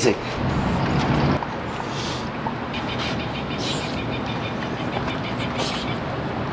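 Steady rumble of city traffic, with a vehicle engine's hum standing out during the first second and a half. A fast, evenly repeating high chatter runs through the middle of the stretch.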